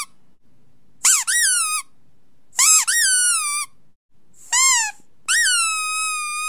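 High-pitched rubber squeaks from a squeaky dog toy: two squeeze-and-release pairs, then a short squeak, then one long drawn-out squeak near the end.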